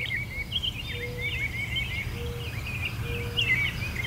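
Birds chirping in quick, repeated high-pitched chirps. Three short, steady lower notes come about a second apart, over a steady low rumble.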